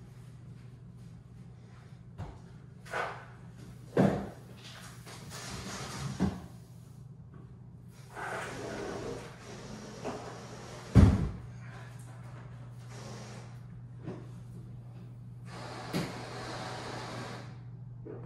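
Plastic canister filter and its hoses being set down inside a wooden aquarium-stand cabinet: a series of knocks and bumps, the loudest about eleven seconds in, with rustling handling noise between them over a low steady hum.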